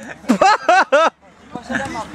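A man's voice giving a quick run of short, repeated wordless syllables, about four a second, that stops just past a second in, followed by the murmur of a crowd chatting.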